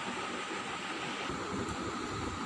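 Steady background hiss of room noise, even throughout, with no distinct event.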